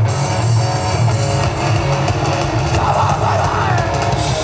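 Live rock band playing a song: electric guitar, bass guitar and drum kit, loud and continuous.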